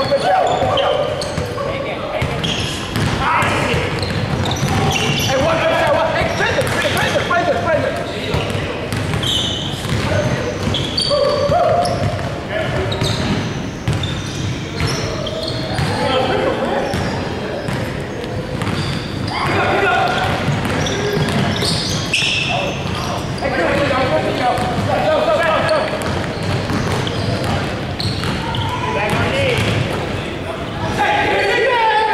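Basketball game in a large gym: a ball bouncing on the hardwood court amid sharp knocks and players' shouted calls, echoing in the hall.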